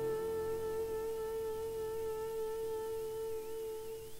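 Soprano saxophone holding one long, steady note in a jazz quartet, which stops just before the end; a low double-bass note fades away underneath.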